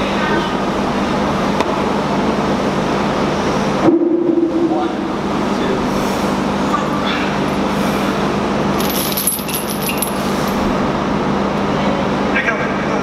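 Steel chains hung on a loaded bench-press barbell clinking and rattling as the bar is unracked and moved, most clearly in the last few seconds, over a steady gym background noise with a constant low hum.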